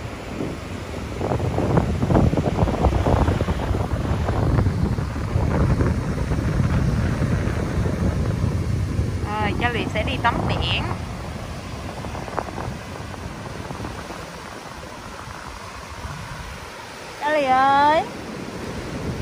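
Strong sea wind buffeting the microphone over the wash of surf, gusting hardest in the first half. Brief high-pitched voice sounds come about ten seconds in and again near the end.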